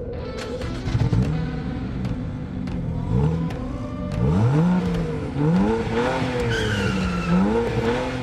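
Car engine revving sound effect: the engine note rises and falls over and over from about a second in, with a high tyre squeal about six and a half seconds in.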